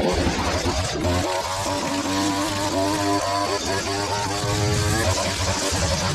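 Petrol line trimmer running at high revs, its cutting line whipping through weeds on brick pavers.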